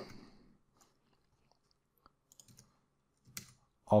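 A few faint computer keyboard clicks as a line of code is finished, between stretches of near silence.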